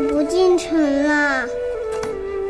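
A little girl's high voice asking a short question in Mandarin, over soft background music with a sustained flute-like tone.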